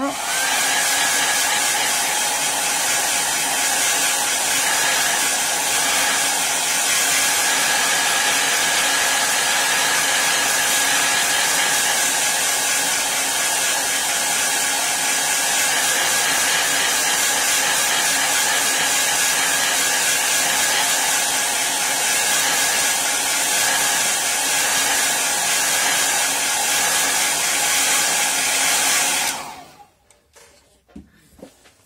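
Handheld heat gun blowing hot air over a wet ink painting to dry it: a loud, steady rushing noise with a thin constant whine. It is switched off shortly before the end.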